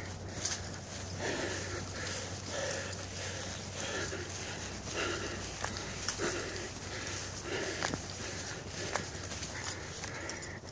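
Footsteps of a person walking at a steady pace on a dirt and grass hiking trail, a soft thud about once a second with small clicks and rustles between.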